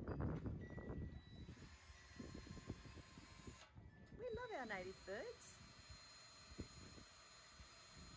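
Wind buffeting the microphone, loudest in the first second, with a few sharp knocks and a brief wavering voice about halfway through.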